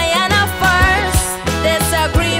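Calypso music with a steady drum beat, a bass line and a wavering melody on top.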